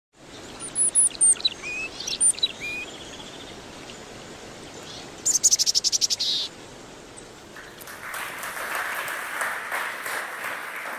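Bird calls: whistled and chirping notes in the first few seconds, then a fast run of high chirps around the middle. Audience applause starts about three-quarters of the way in.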